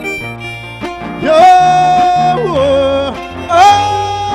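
A man sings long wordless wailing notes into a microphone over violin and guitar accompaniment, in Panamanian décima style. Each note slides up, is held for about a second, and falls away. The first starts about a second in and a second begins near the end.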